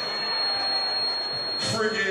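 A steady high-pitched electronic whine from the venue's sound system, over the hum and murmur of a large hall; a man's voice comes back in near the end.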